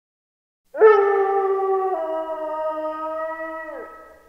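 A wolf howling: one long howl that starts with a quick upward swoop about a second in, holds, drops a step in pitch partway through, and falls away just before the end.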